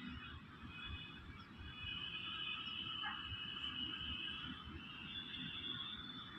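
Faint steady high-pitched whine made of several close tones over low background noise, getting a little louder about two seconds in.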